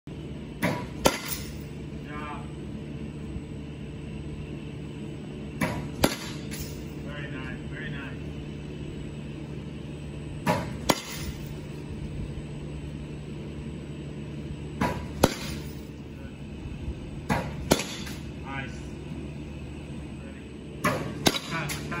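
Softball bat hitting pitched balls in a netted batting cage, six hits about four to five seconds apart. Each loud crack comes with a softer knock about half a second before it.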